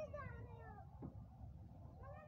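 A child's faint voice, a drawn-out call sliding down in pitch, with a short knock about a second in.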